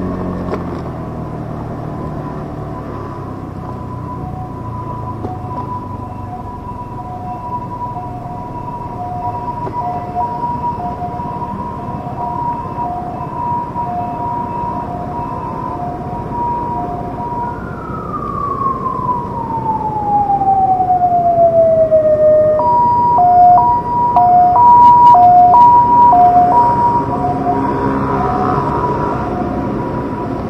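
Emergency vehicle siren alternating between a high and a low tone, faint at first and growing loud over the last several seconds before easing off, with one long falling wail about two-thirds of the way through. Street traffic noise underneath.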